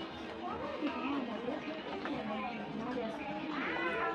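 Indistinct voices of nearby people talking in a busy indoor shopping mall, with a higher-pitched voice rising near the end.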